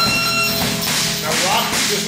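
Background music playing, with several taps and thuds of bodies and hands on a grappling mat as two men drill on the ground.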